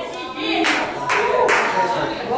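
Three sharp hand claps, a little under half a second apart, over voices.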